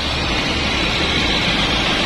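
Toyota Kijang Super's four-cylinder engine idling steadily, heard with the bonnet open: a low even hum under a steady hiss, running smoothly.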